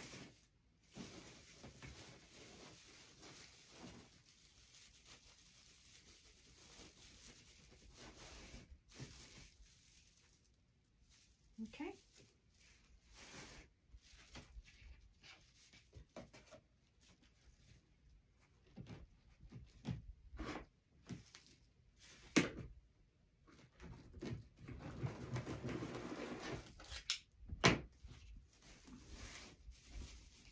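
Faint rustling and crinkling of plastic deco mesh being handled and scrunched by hand, with scattered light clicks and knocks on a tabletop. The rustling thickens for a few seconds near the end.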